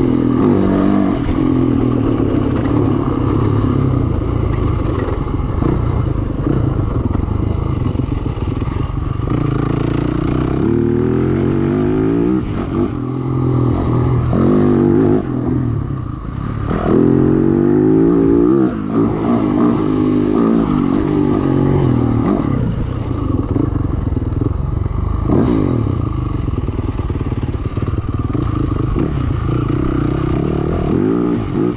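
Yamaha YZ450 dirt bike's four-stroke single-cylinder engine running hard, its pitch rising and falling repeatedly as the throttle is opened and closed, with several sharp revs in the second half.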